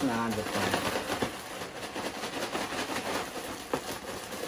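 Plastic zip-top bag of crushed potato chips being squeezed and kneaded by hand to work jelly through them, a continuous crinkling, crunching rustle with many small crackles. A short laugh trails off at the very start.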